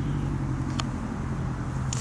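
A steady low mechanical hum, with a faint click a little under a second in and another near the end.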